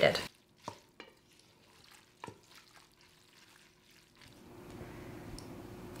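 Wooden spoon stirring macaroni and cheese in a stainless steel Instant Pot inner pot, giving a few soft scrapes and knocks in the first half. A faint steady hum follows from about four seconds in.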